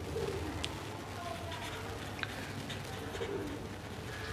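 A bird cooing in low calls, once at the start and again about three seconds in, over faint scratching of a marker writing on paper.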